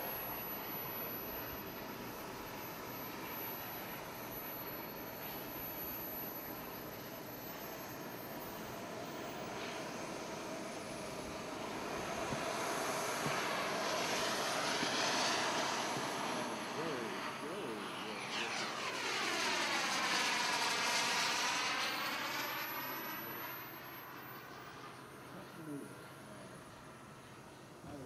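Model gas turbine of an RC Lockheed T-33 jet in flight: a steady jet rush with a thin high turbine whine, swelling twice as the jet makes close passes, loudest about three quarters of the way through, then fading near the end.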